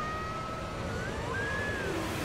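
Film trailer soundtrack: a steady rushing like wind, with a faint high held tone that slides up in pitch a little past halfway.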